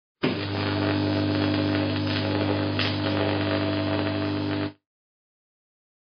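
A steady electronic drone: a low hum made of several held tones, starting just after a brief gap and cutting off suddenly about three-quarters of the way through.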